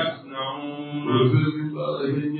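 A man's voice chanting in long held tones into a microphone, with a short break just after the start.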